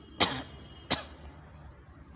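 A man coughs twice, two short, sharp coughs about two-thirds of a second apart.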